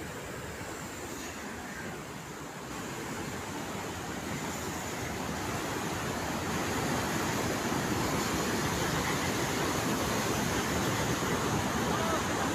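Floodwater of a river in spate rushing and churning, a steady dense rush of water noise that grows louder over the first several seconds and then holds.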